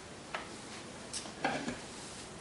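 A spoon knocking and scraping against a mixing bowl as sliced olives are tipped in and stirred into a dry flour-and-cheese mix: a few short knocks, the loudest about one and a half seconds in, over a low steady hiss.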